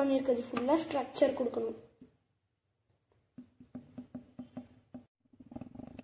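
A voice for the first two seconds, then a pause, then a quick run of short, squeaky pitched pulses, about four a second. Background music begins near the end.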